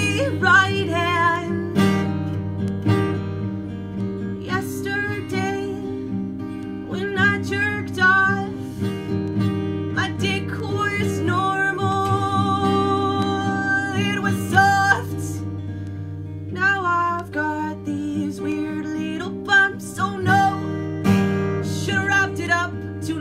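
Acoustic guitar strummed steadily under a woman singing, her long held notes wavering in pitch, with one note held for about three seconds midway.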